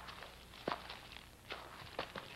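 Footsteps on grass and earth: a few soft, unevenly spaced steps.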